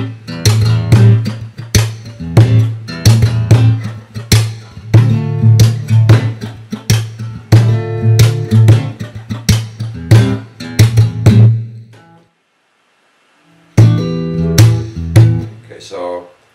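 Acoustic guitar played fingerstyle in a hip-hop groove: thumb-picked bass notes and chords on A minor and D minor, punctuated by percussive slaps on the strings that stand in for drum hits. The playing stops for about a second and a half near twelve seconds in, then starts again.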